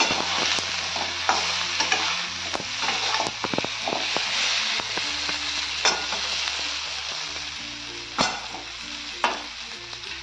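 Stuffed brinjals sizzling in oil in a metal kadhai while a metal spatula stirs and turns them, scraping and knocking against the pan, with sharper knocks about 6, 8 and 9 seconds in.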